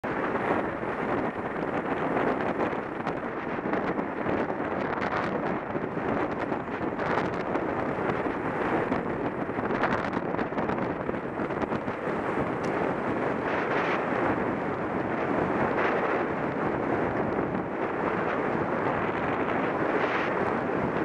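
Steady wind rush on a helmet camera's microphone while riding a road bike at speed, with a few light clicks and knocks.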